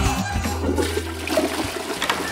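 A toilet flushing, a steady rush of water, with background music underneath.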